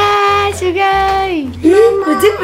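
A high voice singing wordless, long held notes that slide down in pitch and back up, over background music with a steady low beat.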